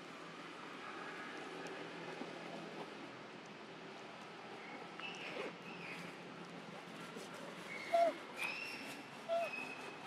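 Several short, high, bending animal calls in the second half, two of them louder near the end, over a steady outdoor background.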